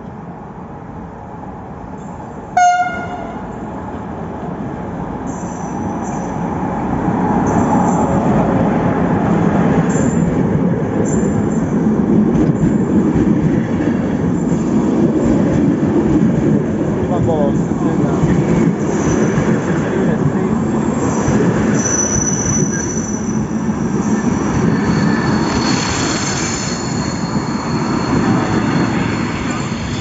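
A passenger train pulls into a station. There is one short horn blast about three seconds in, then the rumble of the locomotive and carriages rolling past close by, which grows louder and then holds. High squealing from the train comes in near the end.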